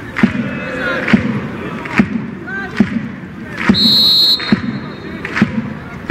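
A large supporters' drum beaten in a steady beat, a little faster than one stroke a second, over crowd voices. A whistle blows once, about four seconds in.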